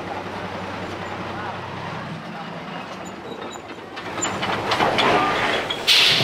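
Isuzu truck towing a trailer driving slowly past close by, its diesel engine running low and steady. From about four seconds in it gets louder, with rattling and clatter from the steel cargo racks and trailer as they go by.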